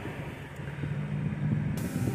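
Car cabin noise while driving: a steady engine and road hum, with a low drone that grows stronger about a second in.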